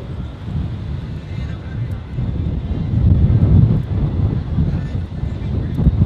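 Wind buffeting the microphone on an open ship's deck: a low, gusting rumble that swells and dips, with faint voices in the background.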